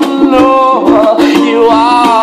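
A man singing loudly with full voice, gliding between held notes, over a steadily strummed acoustic stringed instrument.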